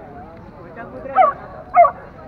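A dog barking twice, two short barks about half a second apart, the loudest sounds here.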